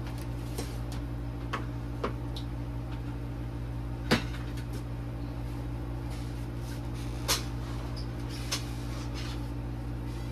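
Kitchenware being handled: a few sharp knocks and clatters of a lid, plate and frying pan, the loudest about four seconds in. A steady low hum runs underneath.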